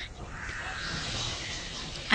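Faint bird calling in the background.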